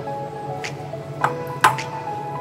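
Background music with held notes, and three sharp clinks of a metal spoon against a ceramic bowl as cake crumbs and chocolate sauce are stirred, the last clink the loudest.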